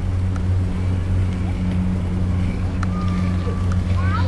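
A steady, loud, low mechanical hum, like a motor running, that holds unchanged throughout.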